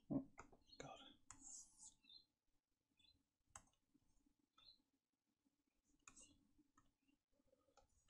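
Near silence broken by faint scattered clicks and a few soft breaths; a short low thump just after the start is the loudest sound.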